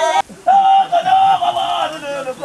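Zulu women singing unaccompanied, a high voice holding long notes: one breaks off just after the start and, after a short gap, a second long note is held almost to the end.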